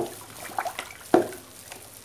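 Wooden stick stirring a mixture of used cooking oil and caustic soda solution in a plastic basin for soap: liquid sloshing, with three sharper strokes about half a second apart.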